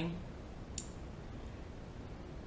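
A single short, sharp click about a second in, over quiet room tone.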